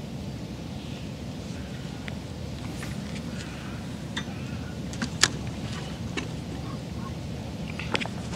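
Steady low wind noise on the microphone, with faint scattered clicks from the feeder rod and reel being handled after a cast and one sharper click about five seconds in.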